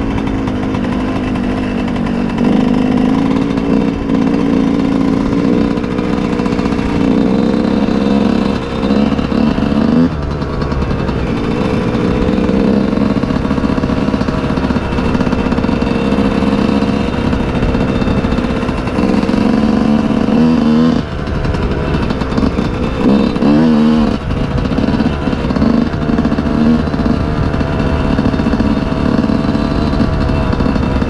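Yamaha YZ125's single-cylinder two-stroke engine running under throttle, loud and fairly steady, with a few brief dips where the throttle is rolled off.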